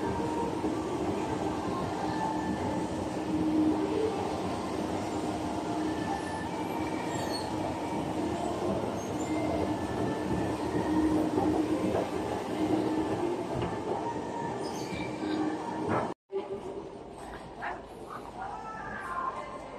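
Escalator machinery running: a steady mechanical rumble with a faint hum and whine. The sound cuts out abruptly about sixteen seconds in, and only quieter background noise follows.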